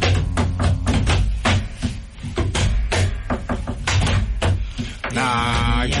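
Hand drum played in a quick, uneven rhythm of sharp strokes with a low thud, accompanying a Rastafari chant. A chanting voice comes back in near the end.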